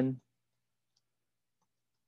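A stylus tapping and sliding on a tablet screen while writing, heard as a couple of faint, brief ticks about a second in.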